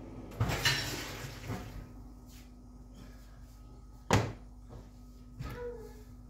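Cookware handling on a glass cooktop: a scraping clatter in the first second or so, then a sharp knock about four seconds in and a softer one near the end as a steel pot is set down, over a faint steady hum.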